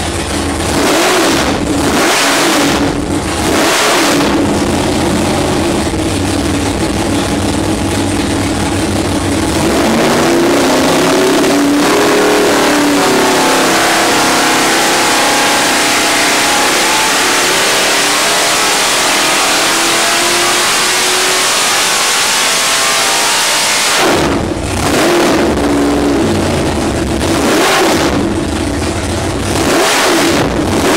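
Nelson Racing Engines 632-cubic-inch naturally aspirated, carbureted big-block Chevy V8 running on an engine dyno. For the first ten seconds it is revved in short bursts. It then holds a long full-throttle pull with its pitch climbing for about fourteen seconds, which cuts off sharply, and short revs follow.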